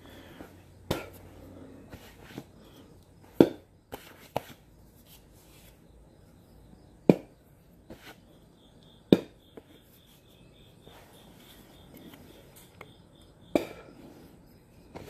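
Handling of a wooden hand-drill spindle and hearth board: a scattering of short, sharp knocks and taps, about seven in all, with quiet rustling between. The spindle is only being set on the board, not yet spun.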